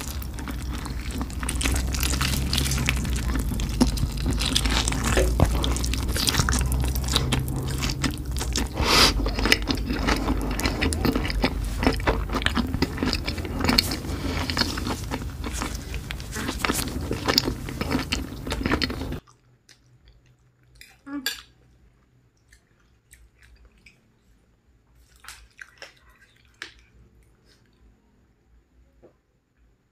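Close-miked eating of instant noodles: dense chewing and slurping with small clinks of a fork and spoon on the plate, over a steady low hum. About two-thirds of the way through, the sound drops off suddenly to scattered faint clicks.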